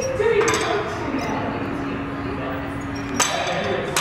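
Metal clinking of a cable machine's weight stack over gym background noise, with a sharp clank about three seconds in.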